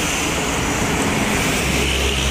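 Highway traffic going past: tyre noise and the diesel engine of a passing Mitsubishi Fuso truck, a steady rumble that grows heavier near the end.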